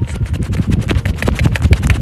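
Rapid, loud kissing smacks made with the lips right on a phone's microphone, many per second, mixed with the rub and scrape of skin against the phone.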